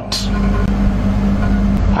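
A steady low rumble with a constant hum underneath, background noise in a pause between a man's words, with a short hiss just after the start.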